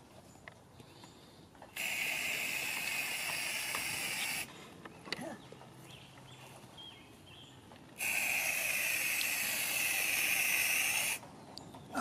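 Rust-Oleum inverted marking paint aerosol can spraying in two steady hissing bursts of about three seconds each, with a pause between.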